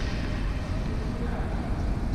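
Steady low rumble of an indoor sports hall's background noise, with faint voices.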